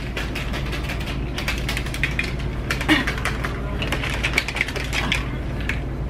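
A plastic protein shaker bottle is being shaken hard. The blender ball inside rattles against the walls in a fast, irregular clatter as the powder and water mix. A steady low hum runs underneath.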